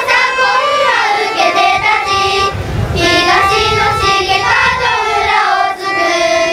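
A group of children singing a song together in unison.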